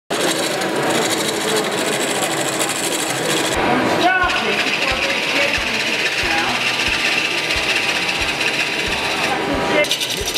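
A wood lathe spinning a large wooden workpiece while a hand-held turning tool cuts into it, giving a steady, rough cutting and scraping noise. The sound changes abruptly twice.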